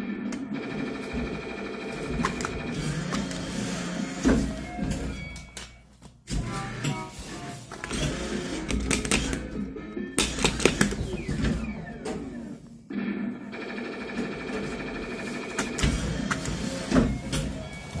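Electronic arcade music from a claw machine, with a few sharp clicks and knocks mixed in and two short breaks in the tune.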